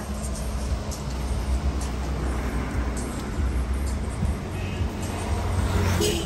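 Motor vehicle noise: a steady low engine rumble with a constant hum, as from cars running on the road close by.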